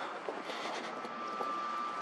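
Outdoor ambience of someone walking with a handheld phone: wind noise on the microphone with a few faint steps or handling clicks. A faint steady high tone comes in about halfway through.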